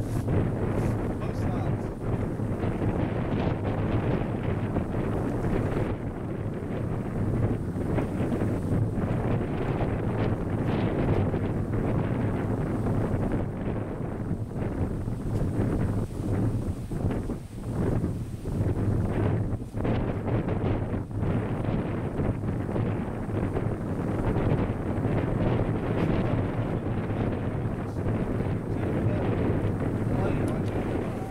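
Wind buffeting the camera microphone, a steady rushing noise that swells and dips.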